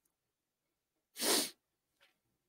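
A single short, sharp breath sound from a person close to the microphone, about a second in and lasting under half a second.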